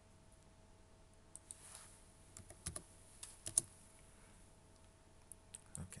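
Faint computer keyboard typing: a scattered run of short key clicks, with a few more just before the end.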